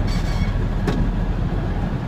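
Straight truck's engine and drivetrain heard from inside the cab, a steady low rumble as the truck pulls in third gear just after the upshift. A single sharp click sounds about a second in.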